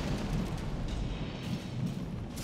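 Low rumbling tail of a title-sequence boom sound effect, dying away, with a faint musical bed.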